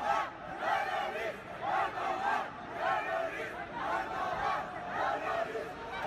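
Crowd of protesters shouting a slogan in unison, many voices together in a rhythmic chant that repeats about once a second.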